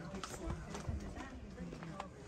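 Footsteps clicking on stone-paved steps, with people talking nearby.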